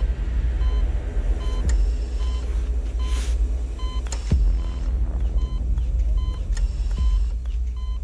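A patient monitor gives short, repeated electronic beeps over a deep, steady low rumble. A few sharp hits come at intervals of about two and a half seconds.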